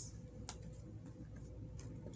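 Quiet room with a faint steady hum and a single light click about half a second in, from an oracle card being handled against the deck or table.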